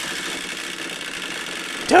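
Wind-up chattering teeth toy clattering rapidly and steadily, starting suddenly. A voice laughs at the very end.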